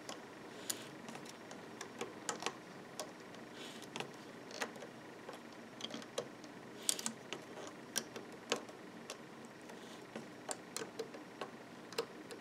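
Light, irregular clicks and ticks of a metal loom hook and rubber loom bands against the clear plastic pegs of a loom board as bands are pulled off and lifted over the pegs one after another, a few clicks a second with small clusters here and there.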